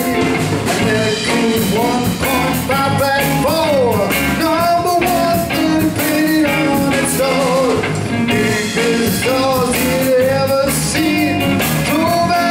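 Live rock and roll band playing: electric guitar, bass guitar and a Pearl drum kit keeping a steady beat, with a lead line of bent, sliding notes over it.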